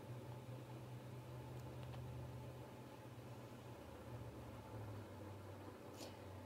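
Faint, steady low hum of a space heater running in the room, under soft room hiss.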